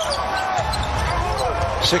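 Live game sound from a basketball court: a ball dribbled on the hardwood and sneakers squeaking in short chirps, over a steady arena hum.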